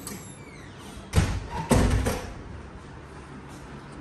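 A wooden door knocking shut: two heavy thuds a little over half a second apart, the second longer.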